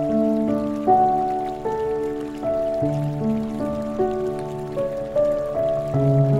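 Slow relaxing piano music, a new sustained note or chord about every second, laid over the steady patter of rain.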